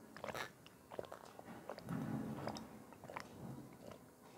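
Close-miked mouth sounds of a person drinking water from a cut-glass tumbler: small wet clicks and sips, with swallowing loudest about two seconds in.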